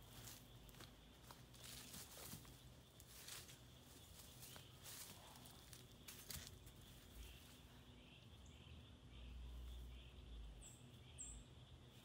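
Faint footsteps and rustling in dry leaf litter through roughly the first half, then quieter, with a few faint high bird chirps near the end.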